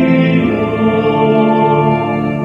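Church choir singing sacred music, several voices holding long notes together.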